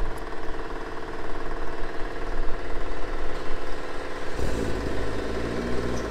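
Mitsubishi Lancer Evolution's turbocharged four-cylinder engine idling steadily after a cold start; about four seconds in its sound turns deeper and fuller.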